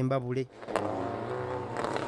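Rally car engines running steadily as the cars drive along a dirt track, starting about half a second in after the last narrated words.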